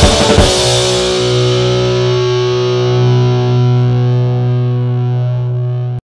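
Music ending: the driving beat cuts off about half a second in, leaving one distorted electric guitar chord held and ringing out, its treble slowly fading.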